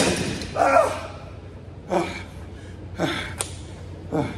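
A man breathing hard after a heavy strongman carry, with loud gasping breaths about once a second. A single thud comes right at the start.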